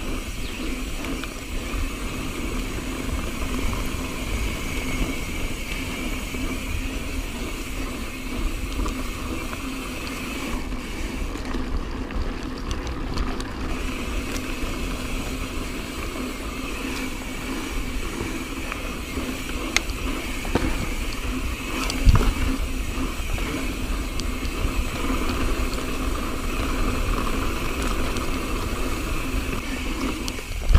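Mountain bike rolling fast along a dirt singletrack: steady tyre rumble and wind noise on the camera's microphone, with short knocks and rattles from the bike over bumps and a harder knock about 22 seconds in.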